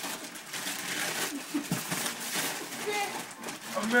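Wrapping paper being torn and crumpled as several Christmas presents are ripped open at once, a run of quick crackling rips, with low voices murmuring underneath.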